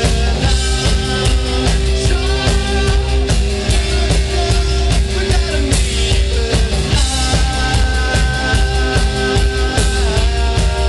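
A rock band playing live: a drum kit keeping a steady beat under electric guitar and long held notes, loud and unbroken.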